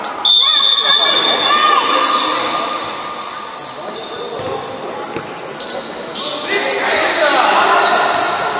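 Futsal match in an echoing indoor hall: players' voices, ball kicks and bounces on the court. A loud, high, shrill tone starts about a quarter second in and fades over the next second or two, and the voices grow louder again near the end.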